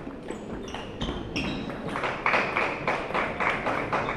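Table-tennis balls clicking off bats and tables in quick, irregular rallies, denser from about halfway through, with a few short high-pitched squeaks in the first two seconds.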